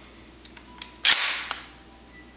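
Mossberg 500 12-gauge pump-action shotgun being racked open for a safety check. Faint clicks come first. About a second in there is one sharp metal clack as the forend and bolt come back, trailing off over about half a second, then a smaller click.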